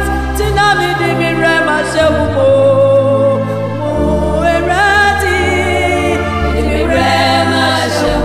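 Ghanaian gospel song sung by a woman, with choir voices behind her, held notes with vibrato and sliding pitches, over a bass line that steps from note to note.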